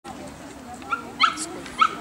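A dog gives three short high-pitched cries, each sliding upward in pitch, over a low murmur of voices.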